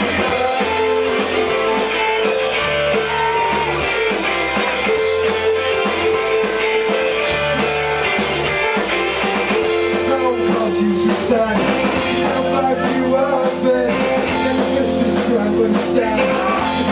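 Rock band playing live, an instrumental stretch: electric guitar holding long notes over bass and drums with cymbals.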